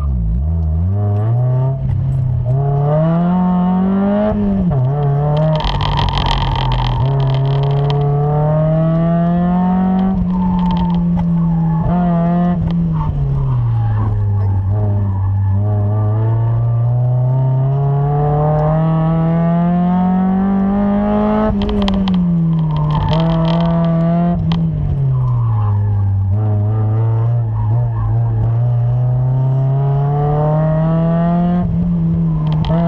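Mazda Miata's four-cylinder engine heard from inside the cabin during an autocross run, revs climbing and dropping again and again as the car accelerates and lifts between cones. Tyres squeal briefly about six seconds in and again around twenty-two seconds in.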